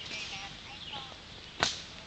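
A single sharp slap or snap about one and a half seconds in, over faint outdoor background.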